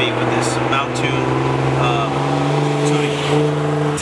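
A steady mechanical hum of several held low tones, under a man's voice.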